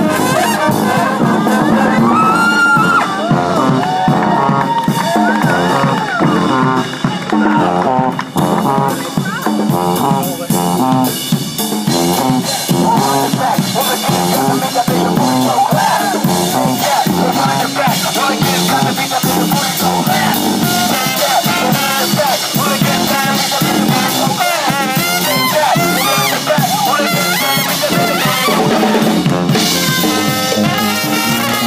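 Brass band playing live: trumpets, trombones and saxophones over a drum kit, without a break.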